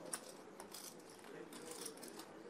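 Quiet room tone at a poker table, with a few faint, sharp clicks of chips or cards being handled.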